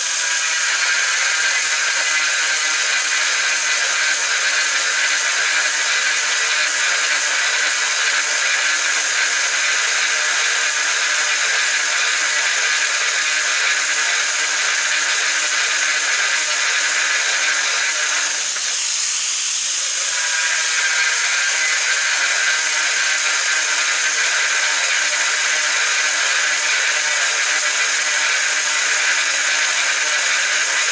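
Angle grinder running under load, its dry-drilling bit grinding through hard ceramic tile: a loud, steady hissing grind with a motor whine. About two-thirds of the way through, the sound briefly changes for a second or two, then the steady grind resumes.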